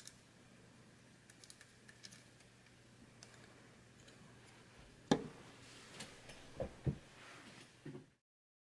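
Faint clicks and taps of small screws and mounting posts being fitted by hand to a circuit board, with a few louder short knocks in the second half as the board is handled.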